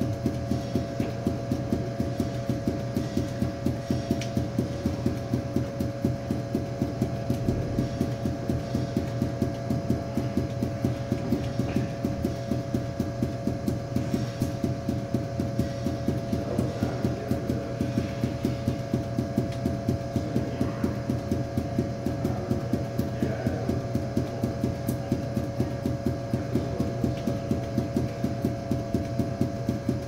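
Five juggling balls force-bounced off a hard floor in a fast, even rhythm of thuds, about four bounces a second, with a steady hum underneath.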